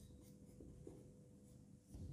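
Faint scratching of a marker writing on a whiteboard, very quiet, with a faint steady hum behind it.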